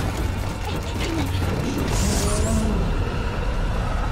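Background score from a TV drama's soundtrack over a steady low rumble, with a few faint held notes and a brief high hiss about two seconds in.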